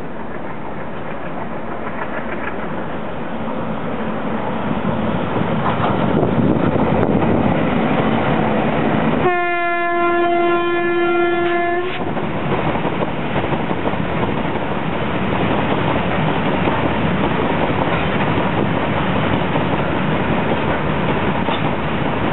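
Indian Railways freight train approaching and passing: its rumble grows louder over the first few seconds. Near the middle comes one steady horn blast of about two and a half seconds. Then the loaded freight wagons roll by with a steady rumble and clickety-clack.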